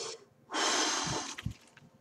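A man blowing out breath hard through pursed lips, twice. The first breath trails off just after the start; the second, about a second long, begins half a second in, with a couple of soft low thumps near its end.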